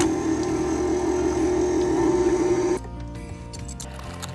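Stand mixer running with its wire whisk beating butter in a steel bowl, switched off suddenly a little under three seconds in, with background music throughout.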